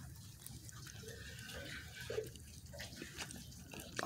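Faint, wet chewing and mouth sounds of a person eating a bite of brownie with ice cream, with a few soft small clicks.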